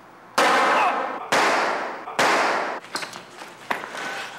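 Three handgun shots about a second apart, the first a third of a second in, each ringing on and fading over most of a second. A few faint clicks follow near the end.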